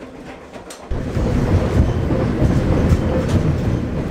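Polar Bear Express passenger train running on the rails, heard from inside the coach: a steady low rumble with track noise that cuts in suddenly about a second in.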